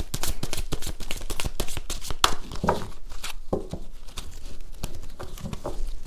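A deck of tarot cards being shuffled by hand: a quick, irregular run of soft card clicks and flicks that thins out after about two seconds.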